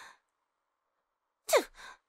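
A woman's short, sharp huff of breath with a quickly falling pitch about a second and a half in, followed by a softer breathy exhale, the sound of an indignant sigh.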